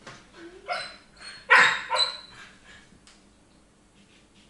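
Siberian husky giving three short barks, the loudest about a second and a half in, while begging for food at the table.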